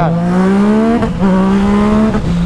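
Yamaha MT-09's three-cylinder engine accelerating hard through the gears, its pitch climbing, dropping sharply at an upshift about a second in, then climbing again.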